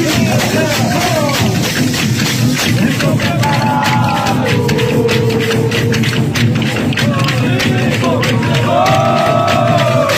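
Bumba-meu-boi toada: dense, fast clacking of many hand-held wooden matracas over drumming, with a crowd, while a voice sings long held notes a few seconds in and again near the end.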